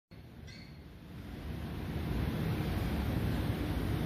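Low rumble of air buffeting the microphone, swelling over the first two seconds, with a brief high squeak about half a second in.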